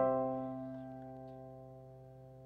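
Kawai piano playing slow music: a chord struck at the very start is held and slowly fades away, with no new notes.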